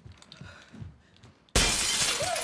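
After near quiet, a sudden loud crash of shattering glass breaks out about one and a half seconds in and keeps going, the sound of intruders breaking in.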